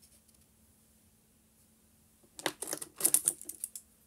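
A quick flurry of sharp clicks and taps about halfway in, lasting about a second and a half, from hands handling things right next to the phone's microphone.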